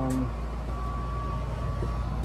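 High-efficiency gas furnace running in heating mode: a steady low hum with a thin, steady high whine over it.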